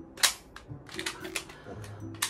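A sharp plastic snap about a quarter second in, then a few lighter clicks, from hands working the toy transformation gear strapped to the wrists during a hero transformation pose.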